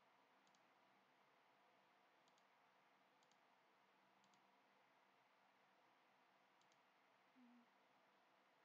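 Near silence, with about five faint computer mouse clicks, each a quick double tick.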